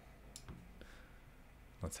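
A few faint clicks of a computer mouse as web pages are navigated.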